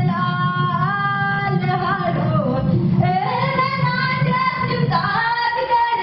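A woman singing solo in long held notes, her voice sliding from one pitch to the next, in phrases of a second or two.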